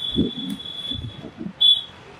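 A high steady tone, held for about a second and a half, then a second short, louder one near the end, with other low sounds underneath.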